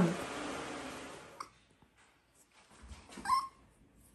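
Toy schnauzer puppy giving one short, high whimper about three seconds in. Before it there is only faint room noise and a small click.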